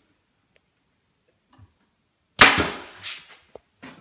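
Pneumatic staple gun firing a staple into the wooden panel frame to pin twine over denim insulation: one sharp crack about two and a half seconds in that trails off over half a second. A softer second burst and a couple of light clicks follow.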